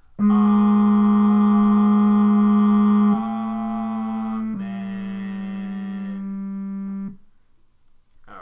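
Electronic keyboard playing three long held notes of a choir's tenor line, each a little quieter than the one before. The tone holds steady without dying away and stops about seven seconds in.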